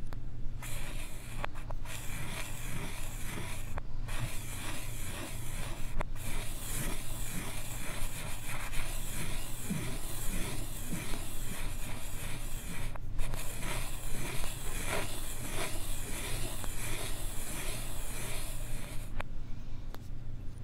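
Chalk scribbling round and round on a blackboard, with the sound played in reverse: continuous scratchy rubbing strokes with a few short pauses.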